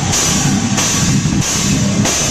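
Heavy rock band playing loud and live: a drum kit with crash cymbals struck on a steady beat about every two-thirds of a second, over guitar and bass chords.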